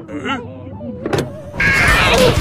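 Car windscreen wipers being switched on: a click from the wiper stalk about a second in, then the wiper motor and blades start loudly near the end.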